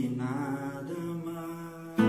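A man's voice holding a long sung note over soft, ringing nylon-string classical guitar, with a fresh strum right at the end.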